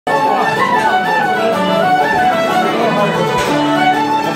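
Live Irish traditional music in a pub, a fiddle playing a quick melody of short stepping notes.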